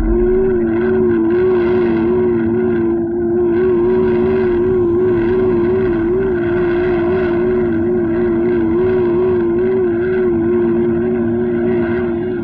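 Cartoon sound effect of a flying robot's mechanical drone: a steady low hum with a stronger whine above it whose pitch wobbles about twice a second.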